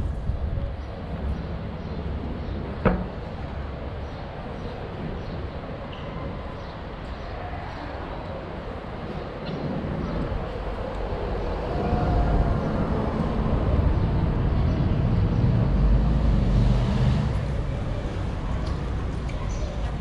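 City street ambience with a low traffic rumble and passers-by talking, with one sharp knock about three seconds in. The low rumble swells louder in the second half.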